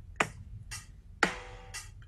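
Metronome clicking a steady beat, about two clicks a second, alternating stronger and weaker.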